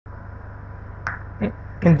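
A steady low hum on the recording, with two short clicks about a second and a second and a half in, and then a man's voice begins near the end.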